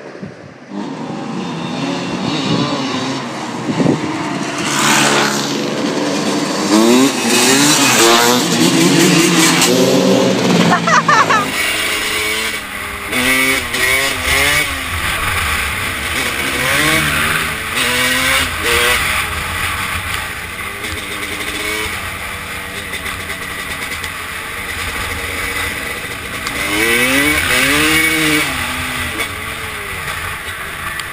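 Several dirt bike engines revving as they ride up and past, pitch climbing and dropping through the gears. From about eleven seconds in, a dirt bike engine is heard close up with wind noise, revving up and easing off in repeated swells.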